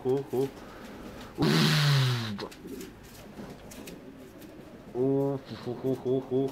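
English Pouter pigeon cooing: a deep coo with a breathy rush about a second and a half in, dropping in pitch, then a shorter coo about five seconds in. A rapid pulsing of deep beats, about five a second, runs at the start and comes back near the end.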